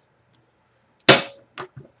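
A single sharp slap or knock about a second in, dying away within half a second, followed by a couple of faint ticks.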